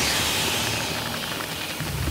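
Natural gas hissing out of a ruptured pipeline in a loud, steady jet, easing slightly over the seconds, with a low rumble underneath.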